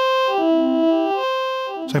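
ModBap Osiris digital wavetable oscillator holding one note while the mod wheel sweeps its Y-axis. The tone jumps between harmonic intervals of the same note, up and back down several times, giving a stepping pitch rather than a smooth glide.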